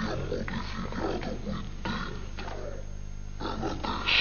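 Short, irregular non-word vocal noises from people, such as grunts or jeers, over a steady low hum.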